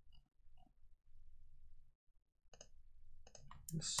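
Computer keyboard keys clicking as code is typed: a few faint scattered keystrokes, then a quick run of them over the last second and a half. A soft low rumble lasts about a second in the middle.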